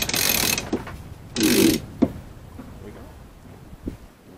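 Sheet winch on a Catalina 22 sailboat ratcheting as a sail sheet is hauled in: a rapid run of clicks at the start, another burst about a second and a half in, then a single knock.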